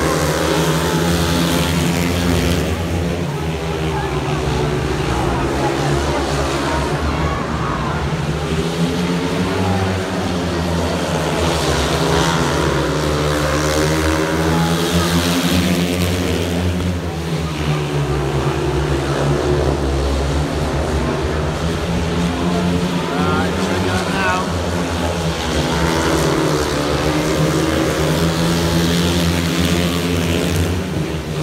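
Four speedway bikes' single-cylinder methanol engines racing round the track, their pitch repeatedly rising and falling as the riders open up on the straights and back off into the bends.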